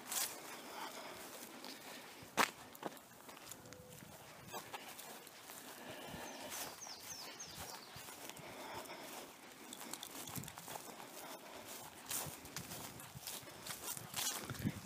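Footsteps of a person walking across grass, faint, with a couple of sharp clicks, one at the start and one about two and a half seconds in.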